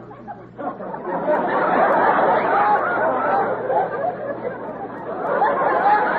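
Crowd noise: many voices chattering and calling out at once, swelling about a second in and again near the end.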